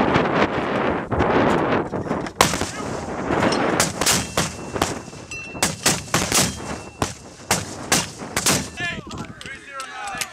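M252 81mm mortar firing: a loud report as the round leaves the tube with a rushing noise for about two seconds, a sharp crack a couple of seconds later, then a rapid run of sharp cracks and reports.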